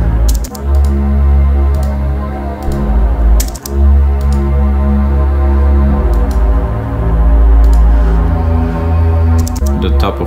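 Ambient software-synth pads playing back: a deep sustained low pad under a mid-range pad, the notes shifting every few seconds. Scattered computer keyboard and mouse clicks over the top.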